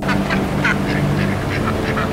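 A group of domestic ducks quacking in a rapid run of short calls, several a second.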